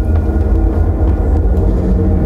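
Loud, steady deep rumble with a faint held drone above it, from the projected soundtrack of a particle-collider exhibit played over loudspeakers.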